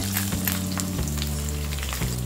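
Hot oil sizzling and crackling in a stainless steel kadai, frying a tempering of mustard seeds, dals, curry leaves, chillies and ginger as crushed garlic is added.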